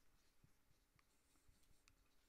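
Near silence with faint marker-pen strokes on a whiteboard: a few soft, short ticks as letters are written.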